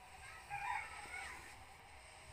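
A rooster crowing once, a call of about a second that starts half a second in.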